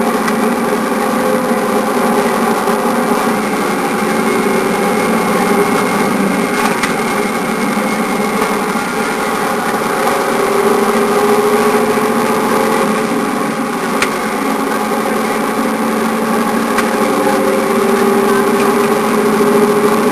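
Engine and road noise of a heavy vehicle heard inside its cab while driving, steady, with the engine note slowly rising twice, around the middle and again near the end.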